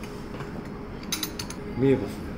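Small ceramic plates and a ceramic spoon clinking together as a plate is lifted off a stack on a wooden table, a quick run of four or five light clicks about a second in.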